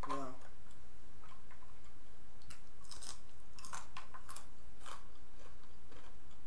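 Close-miked eating: chewing, with about five sharp, crisp crunches between two and five seconds in. A short hummed 'mm' comes at the very start.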